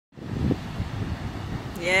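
Steady low rumble of a large waterfall plunging off a cliff into the sea, heard close by, with a brief bump about half a second in. A woman says "yes" near the end.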